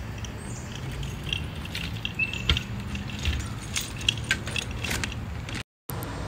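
Outdoor background with a steady low rumble and scattered small clicks and ticks, with a few faint high chirps.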